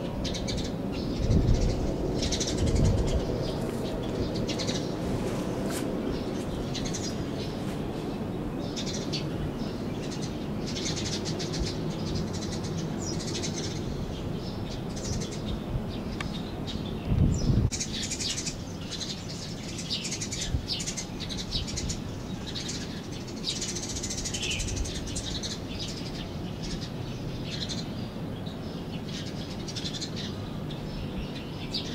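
Small birds chirping over and over in short high calls, over a steady low hum of background noise. A few low bumps on the microphone stand out, two near the start and one about halfway through.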